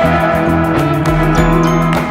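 Instrumental passage of a pop-rock singer-songwriter song: held bass and chord notes over a steady beat, with no singing.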